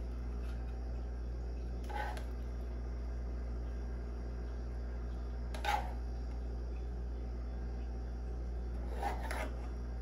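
A steady low hum, with a few faint, brief scrapes and taps, about three, of a plastic spatula scooping vegetable-noodle filling from a frying pan.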